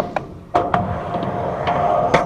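Skateboard on a rusty steel ramp: a few sharp knocks from the board's wheels and trucks hitting the metal, each leaving a brief metallic ring, over the low rumble of the wheels rolling.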